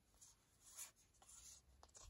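Near silence, with a few faint, soft rustles of small paper cards being handled and sorted in the hands.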